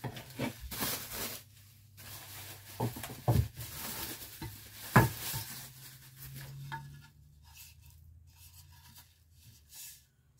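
Bubble wrap rustling and crinkling as it is pulled off wooden rack pieces, with a few sharp knocks, the loudest about five seconds in, then quieter handling near the end.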